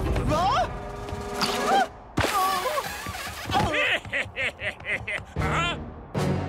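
Cartoon characters' wordless vocal exclamations and effort sounds over background music, with a few sharp knocks.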